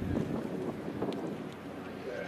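Open-air stadium ambience: a steady murmur of spectators with wind buffeting the microphone.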